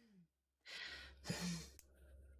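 A person sighing: a breathy exhale begins about half a second in and ends in a short, low voiced hum.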